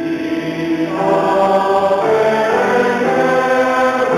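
Congregation singing a slow hymn, each note held about a second before moving to the next.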